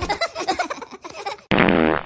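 A fart sound effect comes in suddenly and loudly about one and a half seconds in, after a short stretch of choppy, fading sound.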